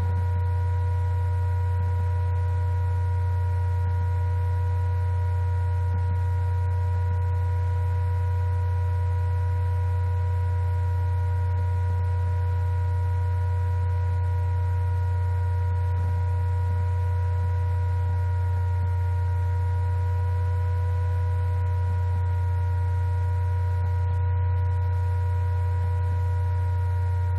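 Laptop cooling fan running steadily, picked up by the laptop's built-in microphone: a constant low hum with several faint steady whining tones above it.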